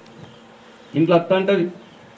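A man's voice over a microphone: one short spoken phrase about a second in, between pauses.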